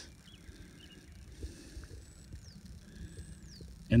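Quiet outdoor riverside ambience: a steady low rumble, with two short, faint high whistles that fall in pitch, one past the middle and one near the end.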